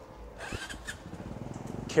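A motor vehicle engine running close by, a low hum with a fast even pulse that grows a little louder through the second half, with faint voices about half a second in.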